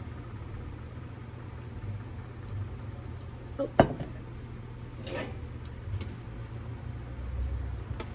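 An enamel pot knocks down onto a wooden table about four seconds in, followed by a few lighter clinks, over a steady low hum.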